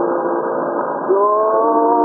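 Muffled, narrow-band recording of a Hungarian song: a long held note, then about a second in a new note slides up into place and is held steadily.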